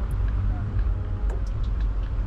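Wind rumble buffeting the action-camera microphone together with tyre and road noise from an electric scooter riding along a paved path, with a few faint clicks and rattles.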